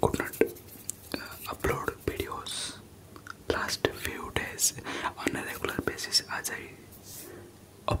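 Fast ASMR hand sounds and whispered mouth sounds close to the microphone: a quick, irregular run of short clicks and breathy hisses.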